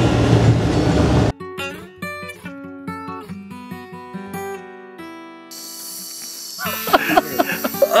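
Acoustic guitar picking slow single notes, each plucked note ringing out and fading. Before it, a loud rushing noise cuts off suddenly a little over a second in, and laughter comes near the end.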